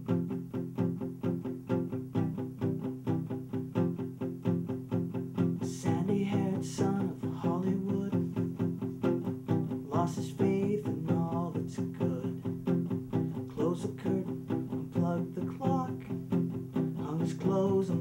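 Nylon-string classical guitar strummed in a steady rhythm, playing the chords of a song. A man's voice joins in singing from about six seconds in.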